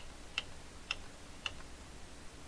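Computer keyboard keys clicking about four times, roughly half a second apart, as Ctrl+Z is pressed to undo.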